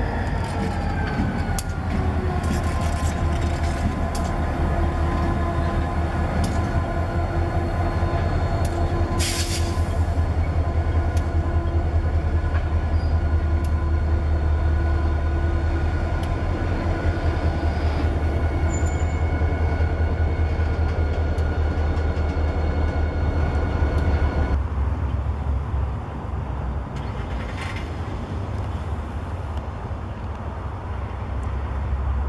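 A string of CSX diesel-electric locomotives rolls close past, pulling tank cars, with a heavy low engine rumble. The engine tone falls in pitch over the first few seconds as the units go by, and the wheels click over the rail joints. About 25 seconds in, the sound drops and thins.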